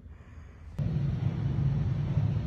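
Faint room tone, then about a second in an abrupt switch to a steady low hum and rumble, like building ventilation or machinery noise.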